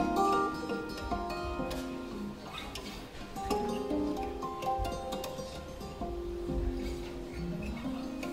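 Two Ken Parker acoustic archtop guitars played together: picked single-note lines over plucked chords, with notes ringing on and a few sliding in pitch.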